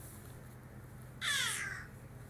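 A baby's short, high-pitched, raspy squeal that falls in pitch, about a second in.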